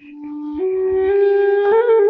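Background music: a solo flute-like wind instrument fades in and plays slow, long held notes that climb step by step.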